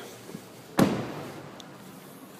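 A car door of the Lexus RX 350 SUV shut once, about a second in: a single solid thump that fades away quickly.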